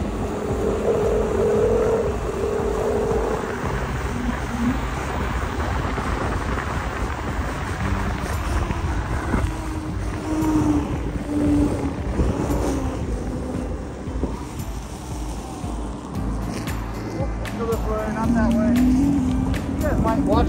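Wind buffeting the microphone and road noise from an InMotion V12 HT electric unicycle riding on pavement, with background music.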